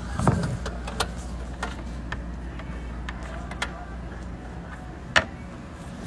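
Handling noise of a phone held in the hand: scattered clicks and knocks, one sharper near the end, over a steady low hum.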